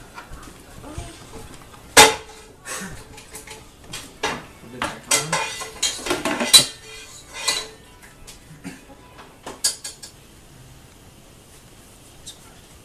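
A metal utensil scraping and clanking against an electric skillet as thick sausage gravy is stirred. The knocks come at irregular times with a short ring, the loudest about two seconds in and midway, and they stop about ten seconds in.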